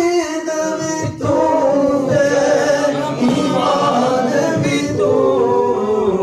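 Unaccompanied vocal recitation of a naat, a devotional hymn in praise of the Prophet, sung in drawn-out, wavering melodic lines with no instruments.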